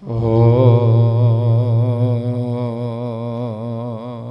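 A man's voice chanting one long, low syllable, held unbroken with a gentle waver in pitch. It is loudest in the first second and slowly tapers off.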